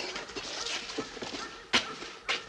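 Footsteps on pavement: irregular sharp knocks about every half second, with one louder, sharper knock near the end.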